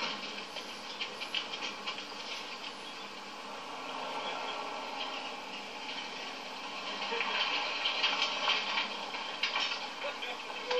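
Pickup trucks driving off and passing close on a road, engine and tyre noise, heard from a film soundtrack through a television's speaker. The sound gets louder near the end as a truck passes.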